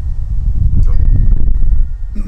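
Loud, irregular low rumble of wind buffeting the microphone.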